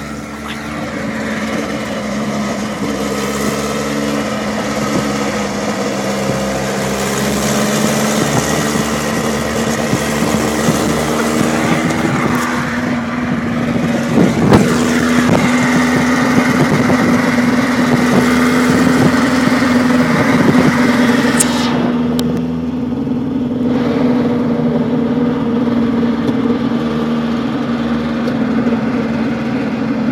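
Ferguson P99 race car's engine running at a steady pace close alongside, mixed with a moving car's own engine, road and wind noise. The engine note rises a little after the middle. There is a sharp knock about halfway through, and the high wind hiss drops away about two-thirds of the way in.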